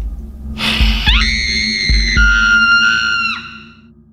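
A woman's long, high-pitched scream over a horror score of low drone and deep booms. It starts with a sharp gasp-like rush, drops in pitch partway through, and falls away a little after three seconds. Then the drone fades out.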